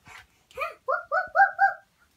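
A young girl's high-pitched voice making five quick, short calls in a row, about four a second, each rising slightly in pitch.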